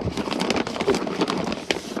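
Brown paper takeaway bags crinkling and rustling as they are handled and passed over, a quick, irregular run of crackles.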